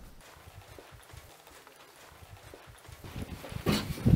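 Footsteps on a hard floor, soft and uneven, then a loud clunk near the end as a glass exterior door is pushed open.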